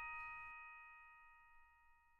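Background music: the last bell-like note of a chime melody rings out and fades away to near silence.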